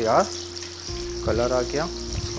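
Pakoras deep-frying in a wok of hot oil: a steady sizzle, with brief bits of a man's voice at the start and about a second and a half in.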